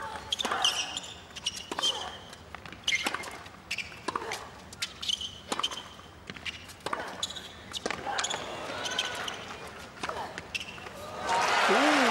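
Tennis rally: racket strikes and ball bounces come every second or so, some shots carrying a player's short pitched grunt. Crowd applause swells near the end as the point finishes.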